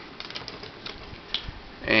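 Scattered light clicks and taps of small plastic toy pieces and a card being handled and picked up off a table.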